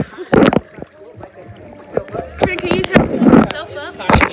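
Pool water sloshing and splashing against a phone held at the water's surface, with a couple of sharp knocks about half a second in. Voices talk in the second half.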